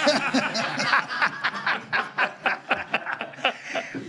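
Men laughing together in quick, repeated bursts, about four or five a second.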